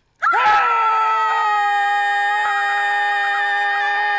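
A man and a woman screaming together in one long, steady scream that starts a moment in.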